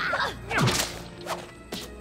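Cartoon sound effects of thrown salsa flying at and hitting a character: a few quick whooshes and thuds, the loudest a little over half a second in, over background music.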